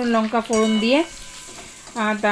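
A metal spatula stirring potatoes and vegetables frying in a steel kadai, with a soft sizzle. A voice is heard over the first half, and the stirring and frying continue more quietly after it stops.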